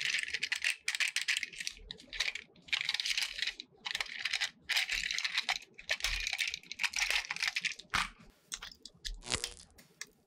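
Plastic parts of a battery-powered toy train engine clicking and rattling in the hands as its body shell is worked off the chassis. The sound comes in short bursts of dense clicks with brief pauses between them.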